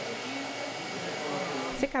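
Hand-held hair dryer running steadily, an even rushing noise of blown air with a faint motor hum, as it is used to blow-dry a customer's hair.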